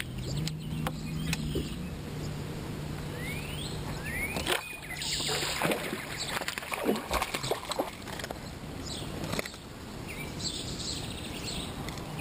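Outdoor fishing sounds on a bass boat deck: a low steady hum through the first half, scattered clicks and knocks of rod and tackle handling, and a few bird calls. A brief hiss comes about five seconds in.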